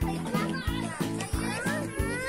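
Background music with a steady beat: a beat about every two-thirds of a second over short repeated bass notes, with voices over it.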